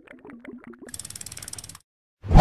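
Ratchet-like clicking sound effect on an animated end screen: a run of separate clicks for about a second, then a faster, brighter rattle of ticks that stops shortly before the end.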